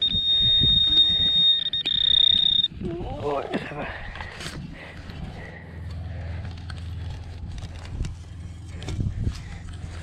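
A Garrett pinpointer sounds a continuous high-pitched tone over the buried target, which sits close to the probe tip, and cuts off about two and a half seconds in. After that come soft scuffs of hands working the soil and a brief murmur.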